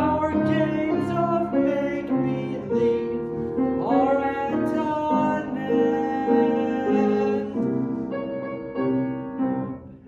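A man singing a show-tune solo line with live grand piano accompaniment, holding and bending long notes between phrases; the line tails off near the end.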